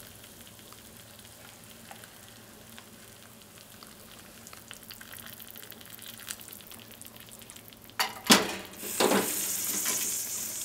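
Hot water poured from a kettle into a cup of instant yakisoba: a soft, steady splashing hiss over the dry noodles. About eight seconds in, the pouring gives way to two loud knocks and some clatter.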